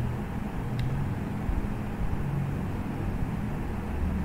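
Steady low background hum with a faint click about a second in.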